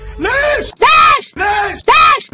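A woman's shouted "leesh!" (Arabic for "why!"), cut and repeated over and over at about two calls a second. Each call rises and then falls in pitch.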